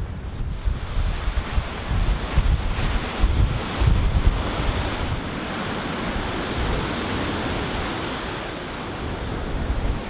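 Surf breaking on the beach below the cliffs, a steady rushing wash of the sea. Wind buffets the microphone in gusts, most strongly in the first half.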